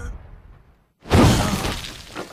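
Movie fight sound effect of a body crashing into wooden boards and smashing them. It comes as one sudden loud crash about a second in, after a moment of near silence, and dies away over the next second.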